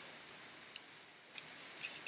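A few faint, short crinkles and rustles of paper and card as a children's lift-the-flap picture book is handled and a flap is lifted.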